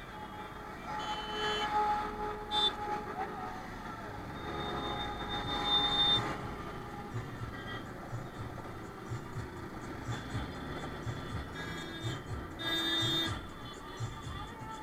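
Road traffic and engine noise in slow, dense traffic, mixed with background music.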